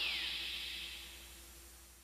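Tail of a synthesizer logo jingle: a falling electronic sweep and a held synth tone, dying away steadily over a low hum.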